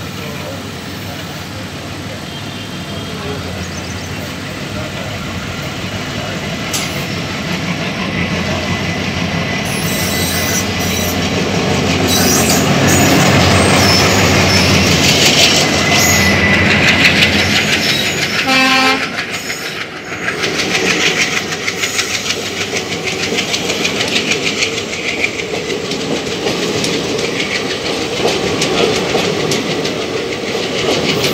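Two trains passing on adjacent tracks at speed. The oncoming diesel locomotive grows louder as it nears and passes, with a short horn note just after it goes by. Then its coaches rush past with a rapid, even clatter of wheels over the rail joints.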